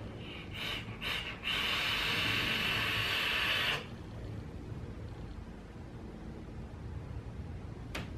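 Drag on a vape through a freshly dripped dripper atomizer: two brief sounds, then a steady hiss of air drawn over the firing coil and wet cotton wick for about two seconds.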